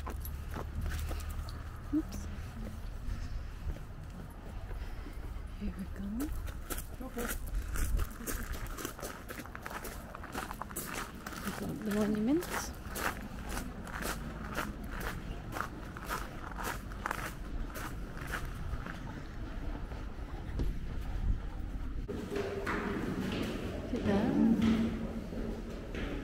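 Footsteps walking at a steady pace on a garden path, with wind rumbling on the microphone.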